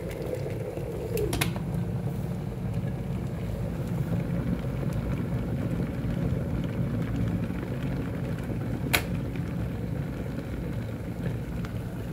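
Stainless-steel electric kettle at a full boil, a steady bubbling rush; about nine seconds in a single sharp click as its switch turns off at the boil.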